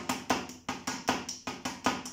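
Wooden drumsticks striking the mesh pads of a Roland electronic drum kit in a quick, even rhythm of about seven strokes a second, some strokes accented more than others. The pattern is the drummer's own variant of the pataflafla rudiment.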